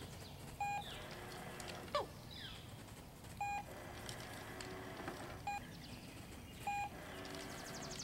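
Four short electronic beeps, irregularly spaced, from a Manners Minder remote-controlled treat dispenser.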